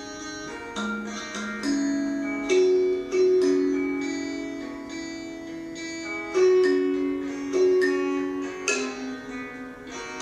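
Kalimba (thumb piano) played with the thumbs: an instrumental passage of plucked metal-tine notes, a note or two a second, each ringing on and fading as the next comes in.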